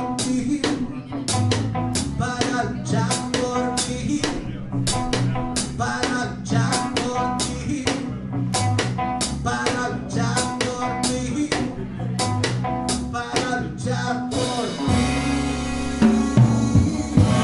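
Live band music: guitar, electric bass and drum kit playing a steady-beat instrumental passage. About a second and a half before the end, the drums open into a louder, busier part with ringing cymbals.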